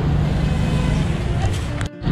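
Busy street-market ambience: a steady mix of motor traffic and background voices, with a brief dropout just before the end.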